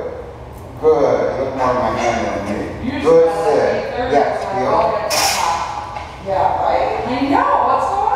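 A person talking in a large room, with a brief hiss about five seconds in.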